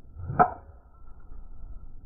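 A driver swung at a golf ball on a tee: a brief rising swish of the downswing into one sharp, loud strike of the clubhead on the ball, followed by a high, thin ring from the clubhead that dies away over about a second and a half.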